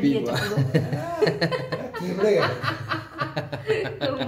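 Several people's voices talking over one another with chuckling and laughter.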